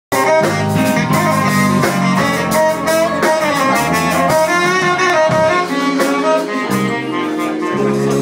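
Live jazz fusion band playing: a saxophone holds long melodic notes over electric guitar, bass guitar, keyboards and a drum kit.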